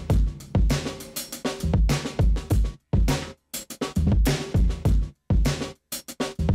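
Drum-kit loop (kick, snare and hi-hat) playing through a noise gate whose threshold is being raised. From about three seconds in the quieter sound between hits is cut off abruptly into short silences, leaving mainly the kick and snare hits.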